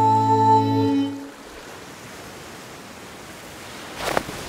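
A cartoon seal's long held sung note, steady in pitch, cuts off about a second in. It leaves a faint, steady wash of calm sea water.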